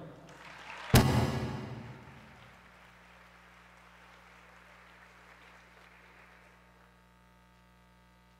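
Audience applause that starts with a sudden loud burst about a second in and then dies away over the next few seconds.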